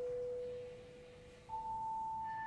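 Soft, pure sustained tones in contemporary chamber music. One held note fades away, and a higher note enters suddenly about three-quarters of the way through and holds steady.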